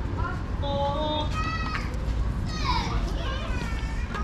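Children's voices calling and shouting in short, high-pitched bursts, some held on one pitch, over a steady low rumble.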